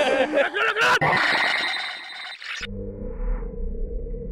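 Film soundtrack: a warped, warbling wash of sound that cuts off suddenly about two and a half seconds in and gives way to a low, steady ambient drone.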